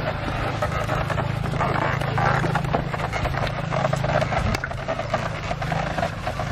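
Wooden ox cart rolling past, its spoked wooden wheels and frame knocking and creaking, over a steady low hum.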